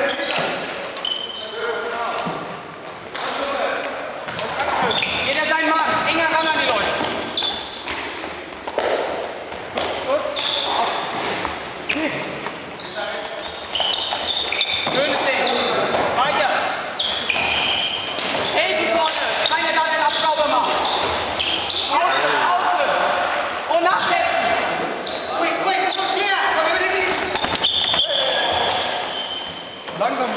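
Floorball game in a reverberant sports hall: players and onlookers calling out throughout, with frequent clacks and knocks of plastic sticks and ball and footfalls on the hall floor.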